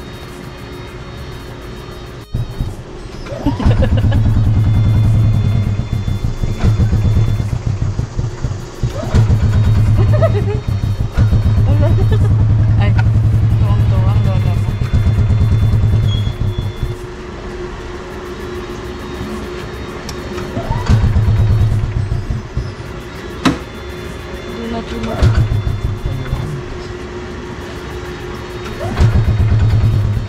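A small vehicle engine running, loud and pulsing in several stretches of a few seconds, with quieter running between. Brief voices come in now and then.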